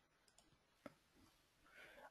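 Near silence with a single faint computer mouse click a little under a second in.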